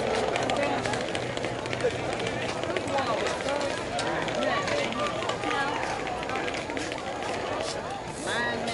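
Indistinct talk and calls from several people across a softball field, overlapping, with a low steady hum underneath and scattered small clicks.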